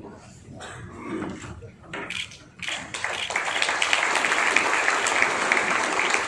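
Audience applause breaks out a little before halfway through and carries on steadily as a dense patter of many hands clapping.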